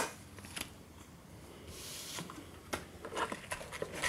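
Faint handling noises: a few light clicks and taps, with a brief soft rustle about two seconds in.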